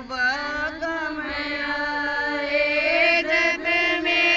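Women singing a Haryanvi devotional folk song (a guru bhajan) without instruments, drawing out long held notes in a chant-like melody that rises slightly near the end.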